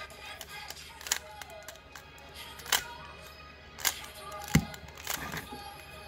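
Plastic clacks of a stickerless 3x3 speed cube as its layers are turned by hand, about five separate turns spread unevenly. Faint background music runs underneath.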